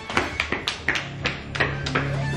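Quick running footsteps on hard pavement, about four steps a second, over music that swells in with a steady low note during the second half.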